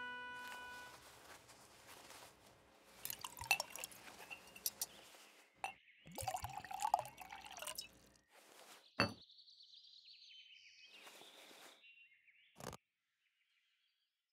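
Foley of wine being poured from a bottle into goblets: faint liquid pouring and trickling in several spurts. A sharp clink comes about two-thirds of the way through, followed by a higher-pitched trickle, and there is another clink near the end.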